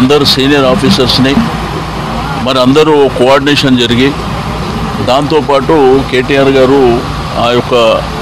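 Continuous speech, with a steady low hum underneath.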